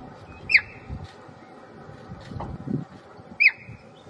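Cheetah chirping: two sharp, high-pitched, bird-like calls that drop quickly in pitch, about three seconds apart. This is the chirp that cheetah mothers and cubs use as a contact call.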